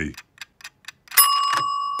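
Kitchen timer ticking quickly, then about a second in it goes "ping": a bright bell tone that starts suddenly and rings on steadily, signalling that the set time is up.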